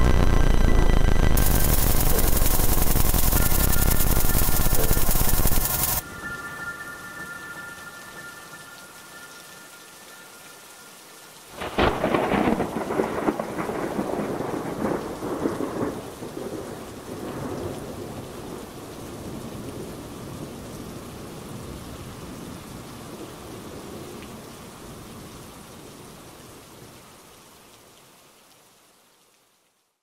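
Heavy rain with a few steady held tones over it cuts off abruptly about six seconds in, leaving softer rain. Just before halfway a sharp thunderclap breaks and rolls into a long rumble that slowly fades away.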